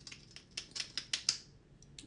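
Small plastic lip-product tube being worked by hand: a quick run of about eight sharp clicks lasting a little over a second.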